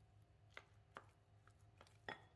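Faint taps and knocks of a silicone spatula against a glass bowl, a few separate clicks about half a second apart, as lumpy churros dough is stirred.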